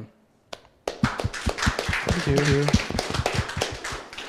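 Small audience applauding with hand claps, starting about a second in, with a voice heard briefly over the clapping.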